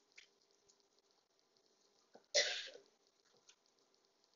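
A single cough about two and a half seconds in, over faint scattered clicks.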